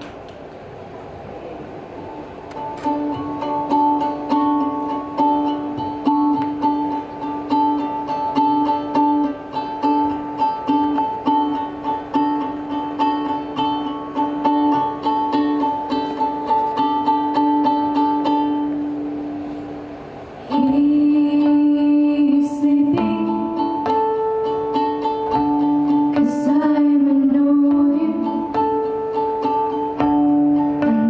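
Live acoustic music: ukulele and acoustic guitar play a steady strummed introduction. About twenty seconds in, a louder section starts with girls singing over the ukulele.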